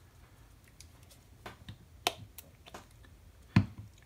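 Finger-pump spray bottle of super glue accelerator being worked over a glued plastic miniature arm: a few short, sharp clicks spread over a couple of seconds, the loudest near the end.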